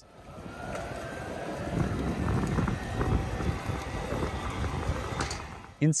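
Dual-motor eCVT e-bike drivetrain running as the rider pedals, a steady whir with a faint whine over road and wind noise.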